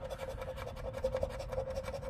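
A round chip-style scratcher scraping the coating off a scratch-off lottery ticket in rapid, repeated short strokes, over a faint steady hum.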